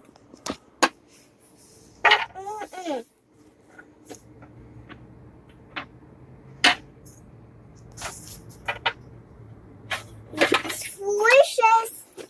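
A toddler's voice in short bursts of wordless babble, around two seconds in and again near the end, between scattered light clicks and taps of toy pots, pans and a shaker being handled on a play kitchen stove.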